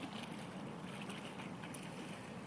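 Steady outdoor background noise with a low rumble of wind on the microphone.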